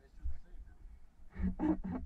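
A man's voice starting to laugh in short pulses in the second half, over a low steady rumble on the microphone.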